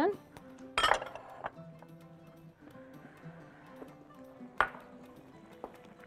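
Soft background music under a few sharp clinks of dishes and utensils being handled. The loudest clink comes about a second in, with another near the end.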